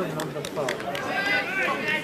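Several people talking over one another, a loose chatter of voices with no single clear speaker.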